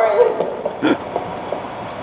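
Audience laughter and murmur dying down, with one short laugh-like vocal sound about a second in.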